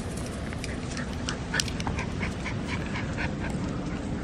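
Toy poodle puppy making short, quick sounds, several a second, while playing with a ball. A steady low rumble sits underneath.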